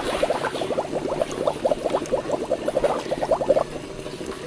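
Pool water sloshing and gurgling against the edge near the microphone, stirred up by a swimmer: a quick run of small wet splashes that dies away shortly before the end.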